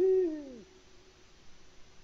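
A male Eurasian eagle-owl gives a single deep hoot, rising then falling in pitch and lasting about two-thirds of a second.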